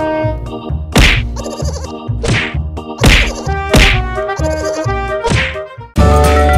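A series of about five sharp cartoon-style whack sound effects over steady background music, with a buzzing effect between some of the hits.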